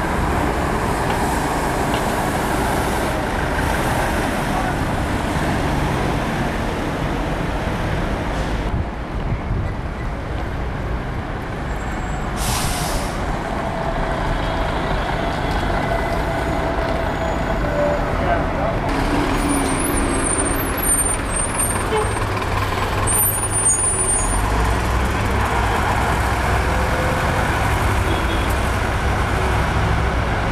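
Diesel buses running and moving off in street traffic, with a steady low engine rumble and a short air-brake hiss about twelve seconds in.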